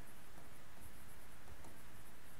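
Plastic stylus writing on an interactive display's glass screen: faint short scratching strokes over a steady background hiss.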